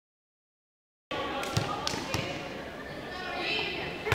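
Silence for about a second, then indoor volleyball match sound in a gymnasium: voices of players and spectators calling out, with several sharp smacks of the ball being hit.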